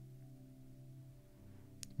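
A faint, steady meditation drone: the soft 'vibration' tone, several held pitches sounding together like a singing bowl's ring. A small click comes just before the end.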